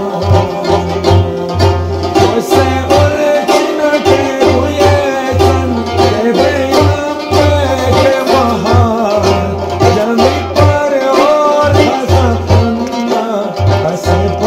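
Hunza rubab plucked over a steady rhythm of deep strokes on a large frame drum (daf), playing devotional ginan music.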